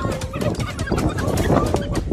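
A pack of African wild dogs calls in high, wavering bird-like twitters and chirps while mobbing a lioness. Underneath runs a steady low rumble with a lot of crackling.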